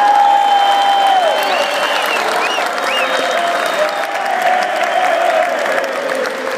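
Large concert crowd applauding and cheering, a steady wash of clapping with long held shouts and a few whistles over it.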